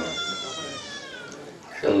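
A long, high-pitched wailing cry, held and then falling in pitch as it fades about a second and a half in.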